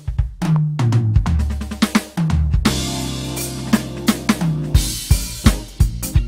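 Electronic drum kit played in a tight swing R&B groove, heard through its sound module with a bass line under it: kick, snare and rimshot strokes over moving bass notes. About two and a half seconds in, a cymbal wash rings over a held bass note for about two seconds before the beat picks up again.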